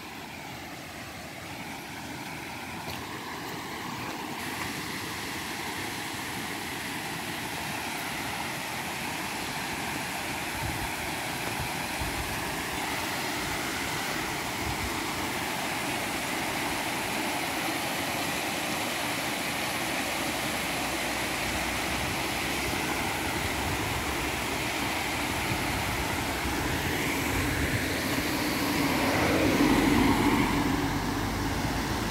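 A steady rushing noise that grows slowly louder, then a vehicle going past near the end.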